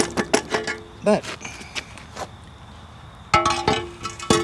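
Metal clinks and clanks as a mini excavator's 200 mm digging bucket comes off its quick-attach coupler and is handled. The loudest clank, about three seconds in, rings briefly.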